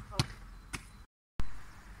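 A volleyball being bumped against a house wall: two sharp hits about half a second apart as the ball comes off the forearms and the wall, with a short "hop" call. The sound then cuts off abruptly, and a thump comes about a second and a half in.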